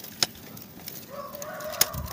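A rooster crowing faintly: one long call in the second half. Two sharp clicks, one near the start and one just before the end.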